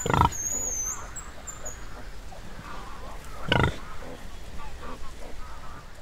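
Pig grunting: two loud, short calls about three and a half seconds apart, with fainter sounds in between.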